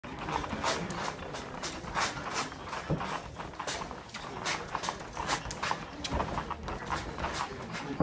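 A boxer shadowboxing, making short, sharp hissing exhalations with his punches, several a second in an uneven rhythm.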